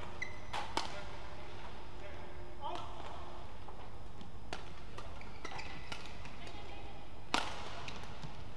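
Badminton rackets striking a shuttlecock, sharp single cracks, with short high squeaks of court shoes. There are two hits close together in the first second and the loudest hit shortly before the end, as a new rally starts; a brief voice is heard about a third of the way in.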